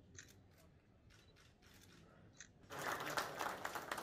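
A few faint clicks, then a roomful of people breaks into applause about two-thirds of the way through, greeting the signing of an agreement.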